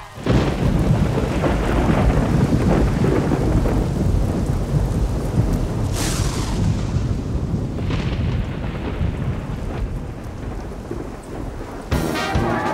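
Heavy rain pouring down, with thunder rumbling throughout. About halfway through comes a sharp thunderclap that fades out over a second or two, and a weaker one follows shortly after.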